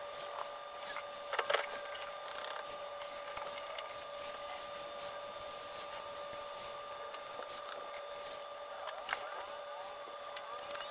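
A steady high whine of two tones runs in the background. Over it come a few short metallic clicks and knocks from a brake booster being worked into place by hand: a cluster about one and a half seconds in and another near the end.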